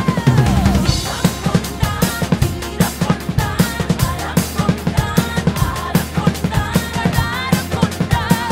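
Acoustic drum kit played fast along to a song's backing track: a busy beat of bass drum and snare hits, opening with a loud hit near the start.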